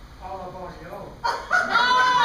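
A loud, high falsetto vocal cry from a performer, starting about a second and a half in, held briefly and then sliding down in pitch, after some quieter talk.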